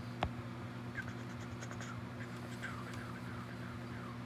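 A stylus tip on an iPad's glass screen while erasing: one sharp tap just after the start, then light scratching strokes, over a steady low hum.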